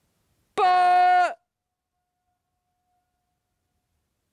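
A man shouts one held, steady note into a deep canyon, lasting under a second. A faint echo of it comes back off the canyon walls about a second later.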